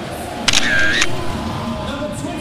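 Camera shutter sound effect: a sharp click, a short whir, and a second click about half a second later, as a still photo is taken. A low steady background of stadium noise runs underneath.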